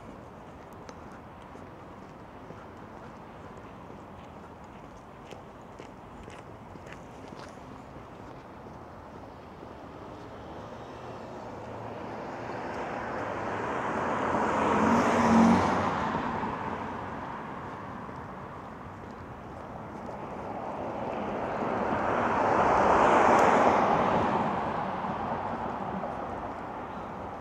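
Two cars passing by on a quiet residential street, one about fifteen seconds in and one about twenty-three seconds in; each is a swell of tyre and engine noise that rises and fades away over several seconds.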